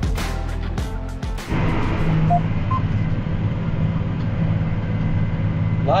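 Background music with a drum beat cuts off about a second and a half in. A John Deere tractor's engine then runs steadily, heard from inside the cab, while the tractor pulls a tillage disc through the field.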